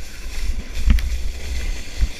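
Plastic sled sliding fast down packed snow: a steady low rumble of the sled over the snow mixed with wind on the microphone, with one sharp bump about a second in.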